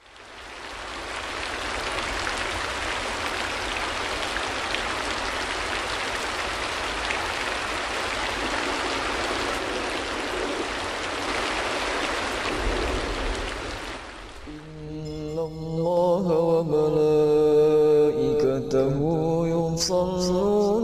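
Steady hiss of rain falling, fading in at the start and dying away about fourteen seconds in. A voice then begins chanting a slow, drawn-out melody.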